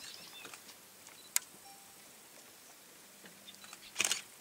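Quiet outdoor ambience with faint scattered ticks and a few short high chirps, and one sharp click about a second and a half in.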